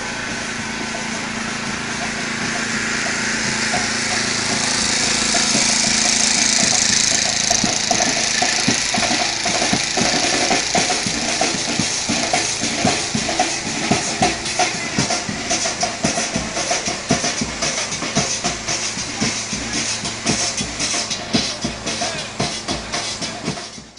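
Loud street-parade noise: music with a strong beat and the chatter of a crowd. The beat comes through clearly from about eight seconds in.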